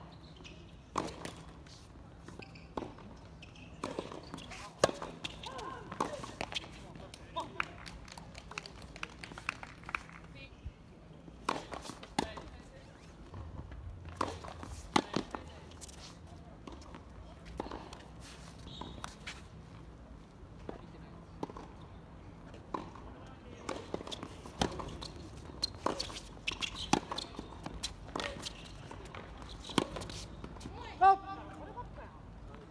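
Tennis rally on a hard court: a series of sharp pops from the ball being struck by rackets and bouncing, along with players' footsteps.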